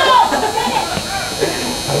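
Several spectators' voices talking and calling out over one another, over a steady high-pitched electrical buzz.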